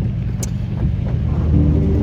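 Low, steady rumble inside a car's cabin, with a single sharp click about half a second in.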